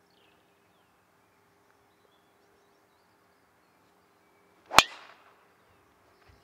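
A golf driver striking the ball off the tee: one sharp, loud crack near the end, with a brief ring after it.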